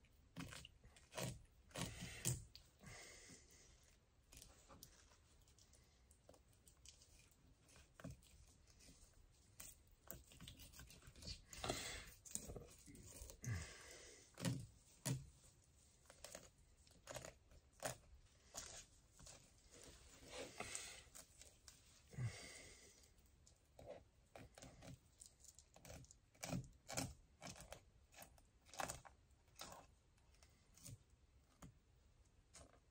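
Small fish knife filleting a crappie on a wooden board: faint, irregular clicks and short scrapes as the blade cuts through flesh and ribs and taps the wood.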